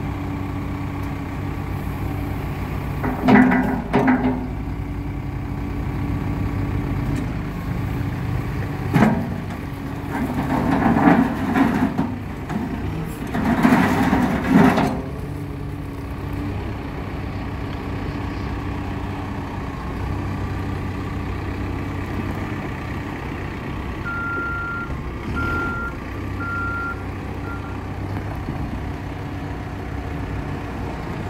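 Cat 430F backhoe loader's four-cylinder diesel engine running steadily, with several louder surges and a few sharp knocks in the first half as the machine works. Near the end its backup alarm beeps about four times.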